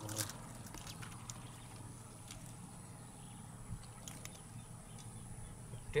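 Quiet swamp-side ambience: a steady high-pitched insect drone with a few faint scattered clicks over a low background rumble.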